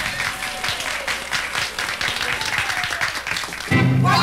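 Live concert audience clapping and cheering between songs, with a few instrument notes under it. About three-quarters of a second before the end, the band comes in loudly with the next number.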